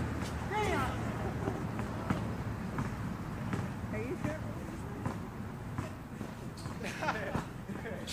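Distant voices of basketball players calling out during a pickup game, with a few sharp knocks of a ball bouncing on the asphalt, over a steady low rumble.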